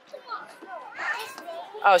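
Children's voices and chatter at a playground, fairly faint, followed by a woman's voice saying "Oh" near the end.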